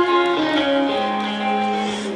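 Live concert music recorded from the audience: a guitar playing the song's intro through the PA, with held, ringing notes.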